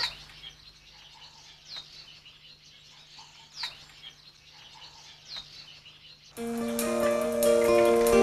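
A small bird's short, high chirp, falling in pitch and repeated about every two seconds, over a faint steady hum. About six seconds in, louder background music with sustained notes starts and covers it.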